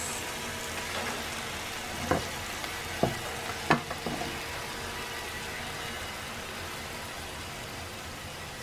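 French toast chaffles frying in butter in a nonstick skillet, a steady sizzle. Three sharp knocks of a spatula against the pan come about two to four seconds in as the chaffles are turned.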